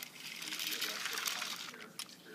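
A plastic toy train moving across a carpet, making a steady hissing, rubbing noise that eases off near the end.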